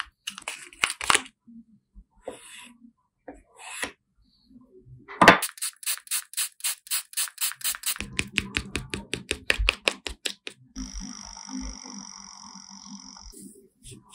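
Metal palette knife scraping and stirring thick jelly gouache in a small plastic paint pan. Scattered scrapes and taps give way to a sharp knock about five seconds in, then a run of quick, even strokes, five or six a second. Wetter, thicker stirring follows, and a steady squeaking lasts about two seconds near the end.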